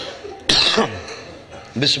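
A man coughs once, close to the microphone, about half a second in: a sudden harsh burst that dies away within half a second. Speech resumes near the end.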